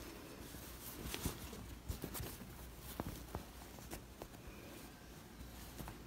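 Faint rustling of cotton fabric being handled and smoothed by hand, with scattered soft ticks.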